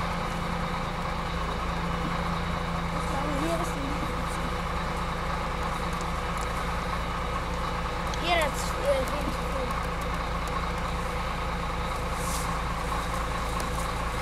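Crane engine idling steadily, a low even hum.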